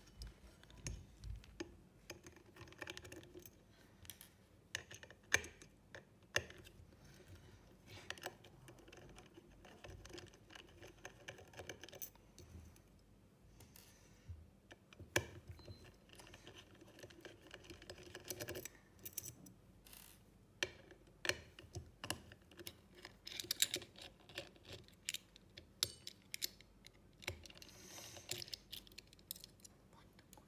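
Small screwdriver working out the tiny screws of a hard disk drive's platter clamp: faint, irregular metal clicks, ticks and short scrapes of tool on screw head and clamp.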